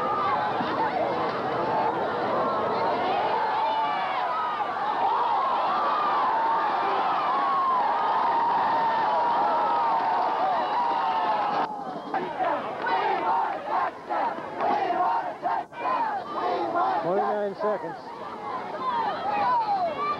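Football crowd cheering and yelling, many voices at once, as the referee signals a score with both arms raised. About twelve seconds in the roar breaks off suddenly at a tape edit, and after it come scattered shouts and voices.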